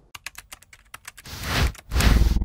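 Edited-in transition sound effect: a quick, uneven run of sharp clicks, then a whoosh that swells about a second and a half in and rises into a louder rush at the very end.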